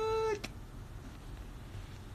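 A single short, high-pitched call, held level and then dipping at the end, lasting about half a second right at the start. After it there is only a low steady room hum.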